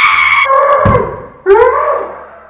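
A woman's loud, high-pitched squealing screams in two long outbursts, with a low thud about a second in.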